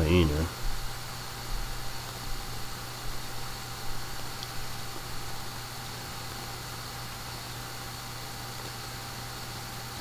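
Steady room tone: a low electrical hum under an even hiss. For the first few seconds it carries faint, irregular small handling noises, which then die away.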